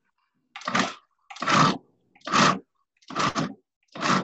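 Food processor pulsed about five times in quick succession, each half-second run of the motor and blade chopping through thick cookie dough to mix in chocolate chips and chopped walnuts, with full stops between pulses.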